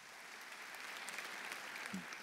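Audience applauding, the clapping growing louder.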